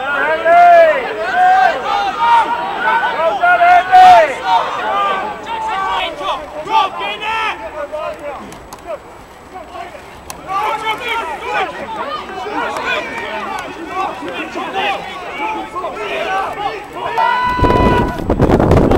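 Shouted voices calling out during rugby play, several overlapping, dropping away for a moment about halfway through. Near the end a steady held tone sounds for about a second.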